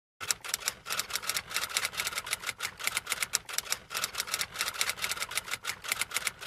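Typing sound effect: a fast, uneven run of keystroke clicks, several a second, as the title text appears letter by letter.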